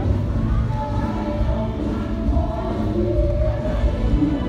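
Amplified live concert music from the stage, heard from outside the grandstand: long held notes over a band with heavy bass.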